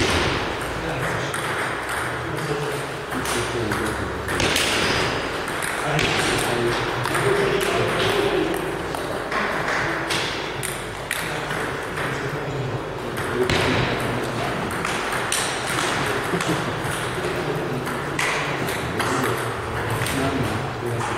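Table tennis balls clicking on bats and tables at irregular intervals, from the rally at the near table and from play on a neighbouring table.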